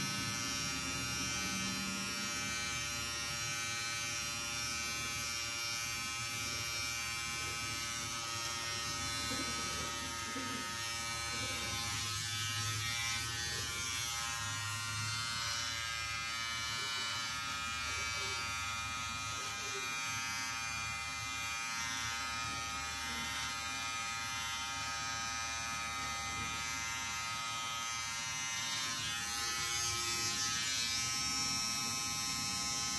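Nova electric trimmer buzzing steadily as it cuts beard and hair.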